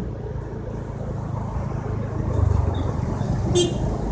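Motorcycle engine and road noise while riding in traffic, a steady low rumble that swells slightly midway. A short high-pitched beep sounds near the end.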